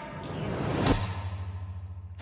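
A rising whoosh transition sound effect that swells to a sharp hit about a second in. It is followed by a low, pulsing bass drone.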